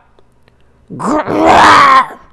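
A woman's voice growling "grrrr" in imitation of a bear, one rough, drawn-out growl that starts about a second in and rises slightly in pitch.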